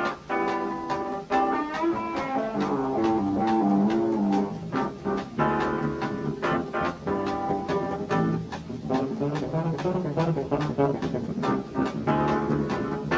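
Jazz-rock band playing live: keyboards playing a fast run of notes over electric bass, with drums keeping a steady beat.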